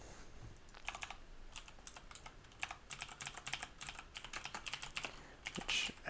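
Typing on a computer keyboard: quick runs of keystroke clicks, starting about a second in.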